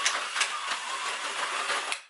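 Micro Scalextric slot car running round its plastic track: a steady buzzing whir from its small electric motor and pickups, with a few clicks. It cuts off suddenly at the end.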